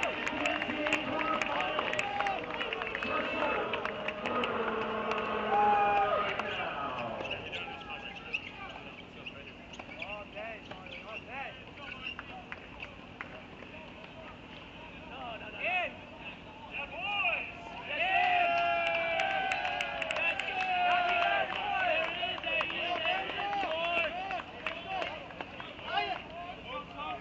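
Voices of people talking around the tennis courts, heard over the courts' open-air sound. Scattered short, sharp knocks of tennis balls being hit and bounced run through it. The voices are quieter in the middle stretch.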